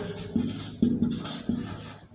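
Marker pen writing on a whiteboard: three short strokes in about two seconds, each starting sharply and fading away.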